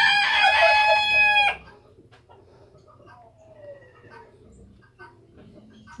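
A rooster crowing loudly: the tail of one long crow, held on a steady pitch, that stops about a second and a half in.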